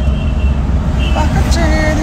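A car running, heard from inside the cabin as a steady low rumble, with a man's voice over it in the second half.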